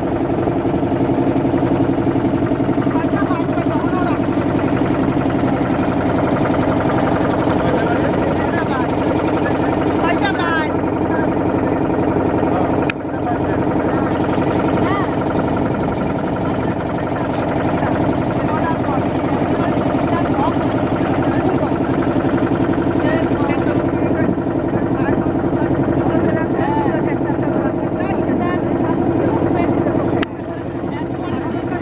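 Motorboat engine running steadily, with indistinct voices in the background and a brief drop about a third of the way in.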